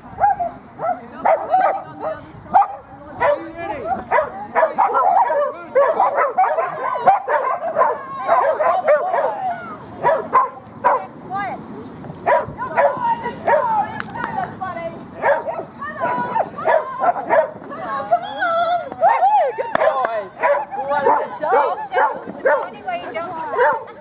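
Dogs barking and yipping over and over, with barely a pause.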